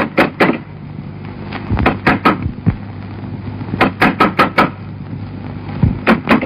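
Knocking on a door in quick bursts of several raps, repeated three times, from someone outside wanting to be let in.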